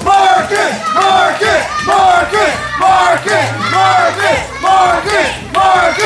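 Wrestling entrance music: a shouted vocal hook repeating about once a second over a steady bass line.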